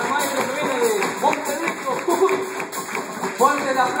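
Live folk band music with several voices singing and calling out over it, on a steady tapped beat.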